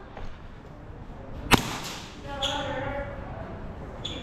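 A single sharp crack of an airsoft gun shot about a second and a half in, followed by faint distant shouting.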